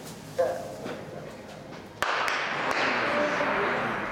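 A race starter's pistol fires about two seconds in, a sharp crack that sets off a loud wash of stadium crowd cheering that slowly fades. A short voice call, typical of the starter's "set" command, comes about half a second in.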